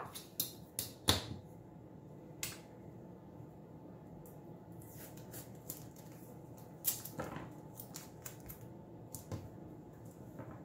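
Hands working a roll of clear tape: a strip is peeled and torn off the roll and pressed across a metal ruler to hold it to the desk, giving scattered sharp clicks, taps and rustles, the loudest about a second in.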